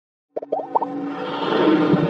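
Intro music for an animated logo sting: a few quick rising pops about half a second in, then a swelling electronic bed with held tones.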